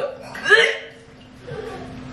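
A man's short, pitched vocal sound about half a second in, then quieter, faint sounds over a steady low hum.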